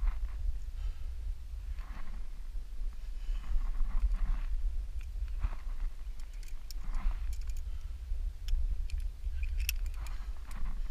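Low, steady wind rumble on a helmet-mounted camera's microphone, with a climber's heavy breaths every second or two while he rests on the route pumped. A few light clicks sound near the end.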